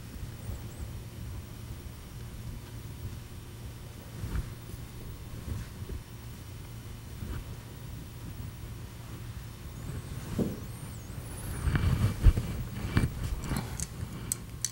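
Steady low hum under faint taps and scrapes of an oil-painting brush working on canvas, with a few sharper knocks near the end as the brush goes back to the wooden palette.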